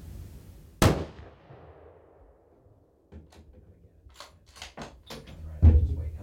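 A single hunting-rifle shot about a second in, its report fading out over about a second. Small clicks follow, then a heavy thump near the end.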